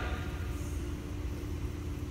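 Steady low rumble with a constant hum: background room noise in a pause between words.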